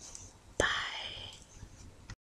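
A woman's brief whisper: a breathy, unpitched voice that starts suddenly with a click a little over half a second in and fades out over about a second.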